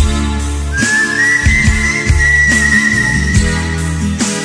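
Bangla rock band music, instrumental with no singing: a drum kit keeps a steady beat under bass, and a high lead melody slides up a little under a second in and holds one long note with a slight wobble.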